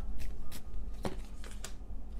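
A tarot deck being shuffled by hand: irregular crisp card snaps, a few a second.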